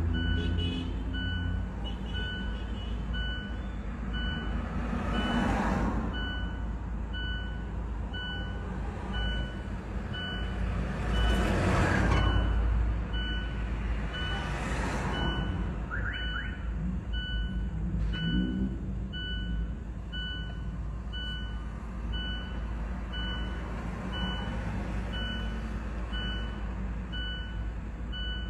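A high electronic beep repeating steadily about once a second, over a low traffic rumble, with vehicles going by about six, twelve and fifteen seconds in.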